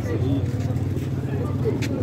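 A motor engine running steadily, a low even hum, under scattered men's voices.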